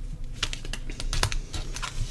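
Tarot cards being handled by hand, with light, irregular clicks and taps.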